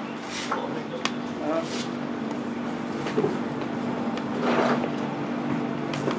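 Distant, indistinct voices of people out on the field over a steady low hum, with a few brief louder calls, loudest about four and a half seconds in.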